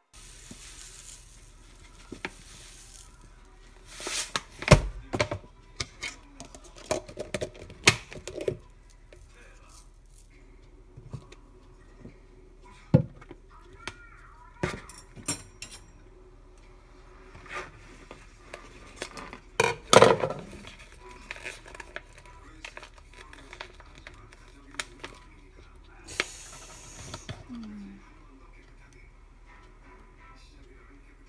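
Plastic detergent containers handled on a kitchen counter: scattered knocks, taps and clicks of bottles, caps and a plastic cup being moved and set down. The loudest are about five seconds in and about twenty seconds in, and there is a brief rushing pour near the end.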